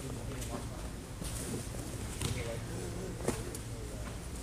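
Faint voices over a steady low hum of a sports hall, with two sharp slaps about two and three seconds in, the second louder.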